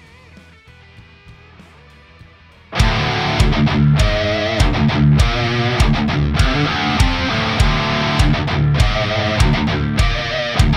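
For the first three seconds only faint sustained notes ring. Then a loud, high-gain heavy-metal band mix kicks in suddenly: distorted electric guitar from a Les Paul through a Wizard MTL tube amp and an Orange 4x12 cab with Celestion G12H Redback speakers, over driving drums and bass, hits landing at a steady rhythm.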